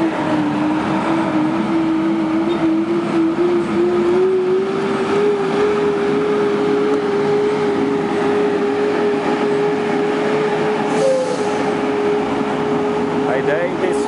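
Tractor-drawn atomizer sprayer at work: the tractor's diesel engine and the sprayer's fan blowing out disinfectant mist, a steady rushing noise with a strong tone that creeps slowly up in pitch.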